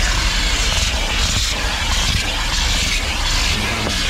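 Vacuum cleaner running steadily, its nozzle drawing dirt and sand off a rubber car floor mat.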